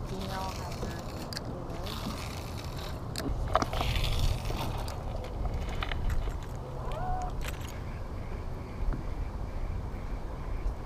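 Wind buffeting the microphone, a steady low noise, with a few short clicks and faint snatches of voice.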